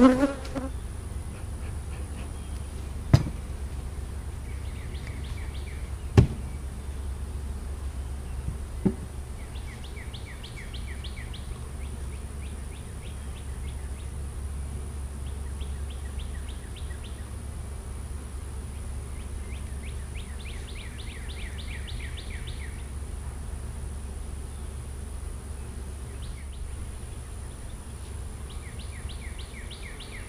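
Honeybees buzzing steadily around open hives. Three sharp knocks come in the first nine seconds, and a rapid high trill repeats a few times in the background.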